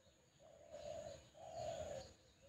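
A dove cooing twice, two drawn-out low coos about a second apart.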